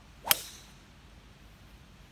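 A 3-wood tee shot: a brief rising swoosh of the downswing, then a sharp, loud crack as the clubface strikes the ball about a third of a second in, with a short ringing tail.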